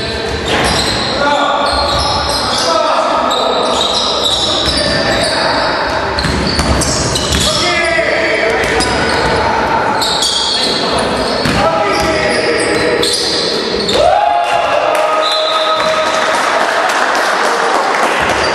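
Live basketball game in a gym hall: the ball bouncing on the court floor, with short sneaker squeaks and players' shouts, all echoing in the large hall.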